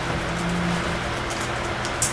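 Room tone of a meeting hall heard through the microphone system: steady hiss and low hum, with a brief low hum about half a second in.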